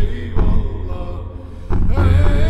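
Male voice singing an ilahi, a Turkish Sufi hymn, in a slow, ornamented melody with gliding notes, over a deep, low accompaniment.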